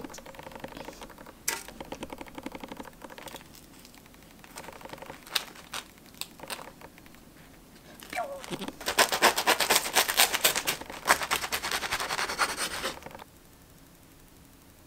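Kitchen handling sounds: metal tongs and hands setting fillings onto an open baguette, with scattered clicks and rustles. Then, about nine seconds in, a dense run of loud crackling lasts about four seconds and stops suddenly: the crisp crust of the baguette breaking as the sandwich is pressed and cut.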